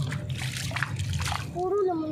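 A hand splashing in shallow seawater, several quick irregular splashes, then stopping about a second and a half in.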